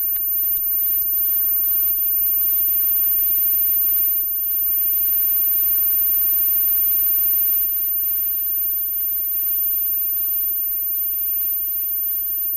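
A live rock band plays a quiet, spacey passage led by sustained keyboard/synthesizer with soft guitar and no clear drum beat. A steady electrical mains hum and a constant high-pitched whine run underneath. The instrument sound thins out about two-thirds of the way through.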